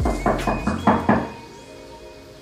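Knocking on a door: about five quick raps in the first second or so, over background music with steady held tones.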